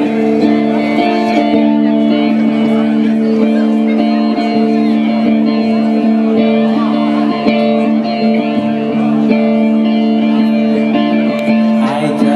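Electric guitar through an amplifier holding one steady, sustained chord like a drone, unchanging in pitch, as the intro to a song in a live rock set.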